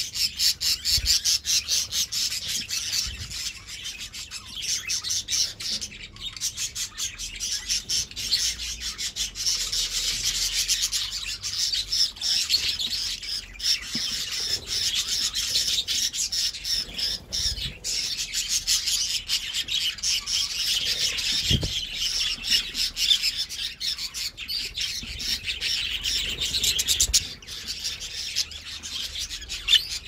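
A flock of budgerigars chattering and warbling without a break, a dense mix of quick chirps and squeaks.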